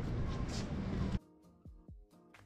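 Steady outdoor background noise that cuts off abruptly a little over a second in. Quiet background music with low drum beats follows.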